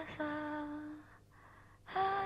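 A lone female voice singing slow, long held notes with no accompaniment: one note fades out about a second in, and the next begins just before the end.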